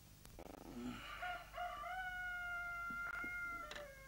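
A rooster crowing once, starting about a second in: a short opening note, then a long held note that falls away at the end.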